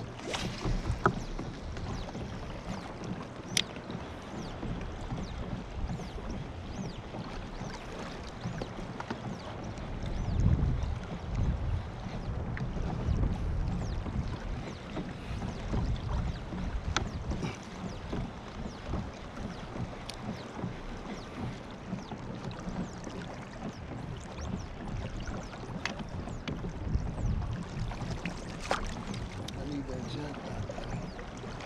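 Water lapping around a fishing kayak on open sea, with wind gusting on the microphone and swelling twice, about a third of the way in and near the end. A few light clicks come through.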